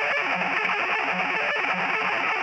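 A loud, steady burst of harsh, distorted, noisy music, a short transition sting.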